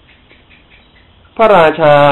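Just over a second of quiet room noise, then a man's voice resumes speaking Thai in a sermon.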